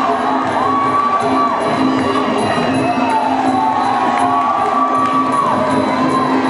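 Muay Thai ring music (sarama): a reedy wind instrument plays long held notes that slide up and down, over a steady accompaniment, while the crowd cheers and shouts.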